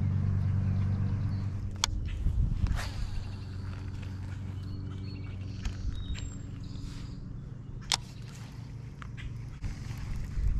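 A Shimano baitcasting reel being handled and slowly cranked, giving a few sharp clicks, over a low steady rumble that fades after the first couple of seconds.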